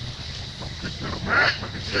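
Monkey calls: a run of short, harsh cries, the loudest about a second and a half in.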